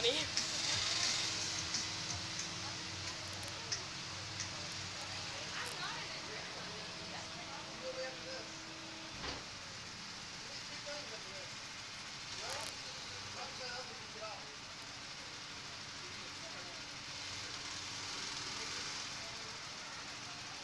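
Steady background hiss with a faint low hum, and brief faint distant voices now and then.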